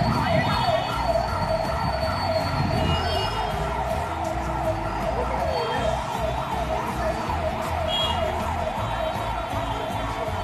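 A siren wailing in a fast yelp, its pitch rising and falling a few times a second, steady and unbroken, over a low rumble.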